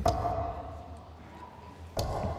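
A single steel-tip dart striking the Winmau dartboard, a short sharp hit near the end, the third dart of a three-dart visit at the treble 20, over the low murmur of a large hall.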